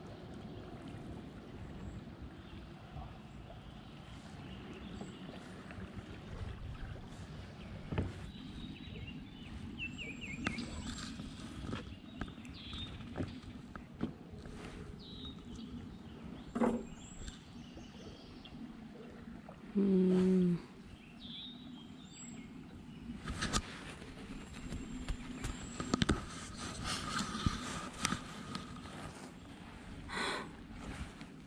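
Quiet riverside ambience with birds chirping, including a short falling trill about ten seconds in, and scattered sharp knocks from the aluminum fishing boat as gear is handled. A person gives a short hum about twenty seconds in.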